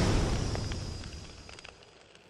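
The fading tail of a deep boom sound effect from an animated title intro: a low rumble dying away over about a second and a half, with a few faint crackles.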